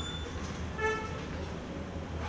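A short horn toot, a fraction of a second long, about a second in, preceded by a brief high beep at the very start, over a steady low room hum.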